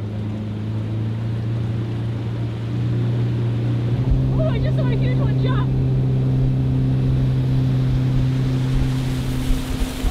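Outboard motor driving a small boat upriver, running steadily with a low hum; about four seconds in it speeds up a little, rising slightly in pitch and loudness.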